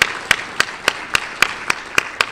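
An audience applauding, with one person's hand claps close to a microphone standing out as sharp, even claps about four times a second.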